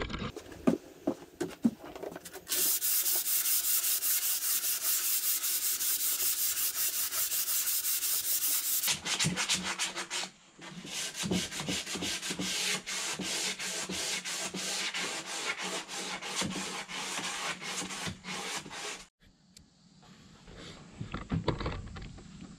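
Sandpaper scraping rapidly back and forth over oak, sanding down dried grain filler. It comes in two long spells with a brief pause between them, starting a couple of seconds in and stopping a few seconds before the end.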